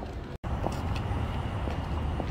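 Heels of Chanel knee boots clicking on pavement at a walking pace, about two steps a second, over a steady low rumble of city traffic. The sound drops out for an instant near the start.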